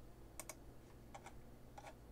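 Faint clicking of a computer keyboard: about three pairs of light taps spread over two seconds against a quiet room.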